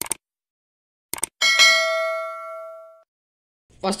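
Subscribe-button animation sound effect: a few short clicks, then a bright bell ding about a second and a half in that rings on and fades away over about a second and a half.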